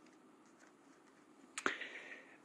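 Near silence, then a single sharp click about one and a half seconds in, followed by a brief faint rustle.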